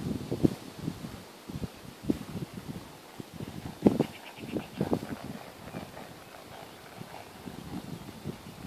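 Hoofbeats of a ridden horse trotting on grass: irregular dull thuds, with a short, fast rattle about four seconds in.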